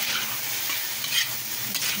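Chicken strips with carrot and celery sizzling in a hot wok as a spatula stir-fries them: a steady frying sizzle with a few short scrapes of the spatula against the pan.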